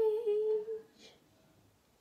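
A girl humming one steady note with her mouth closed, lasting under a second.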